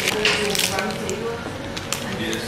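Paper burger wrapper crinkling and rustling as it is handled and folded back, in several short bursts.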